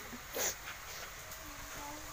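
A short burst of noise just under half a second in, then a faint, thin animal whine held for about a second in the second half.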